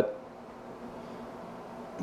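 Quiet room tone: a faint steady hiss with no distinct sounds.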